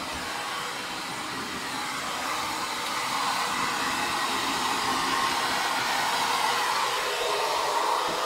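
Handheld hair dryer blowing steadily on a wet dog's coat, its rush of air growing a little louder over the first few seconds.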